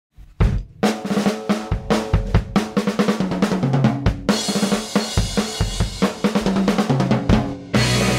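A band's song opening on a drum kit, snare, bass drum and cymbals, over a pitched bass line. A short break comes near the end, then the full band comes in.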